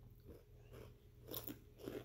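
Faint chewing of crunchy Doritos Dinamite tortilla chips, with a few short crunches, the clearest about one and a half seconds in.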